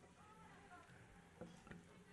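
Near silence: faint room tone with two faint clicks about one and a half seconds in.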